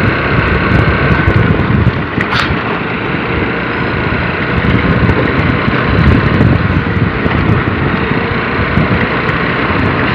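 A motor scooter running along a road while riding, with loud, steady wind rush on the microphone.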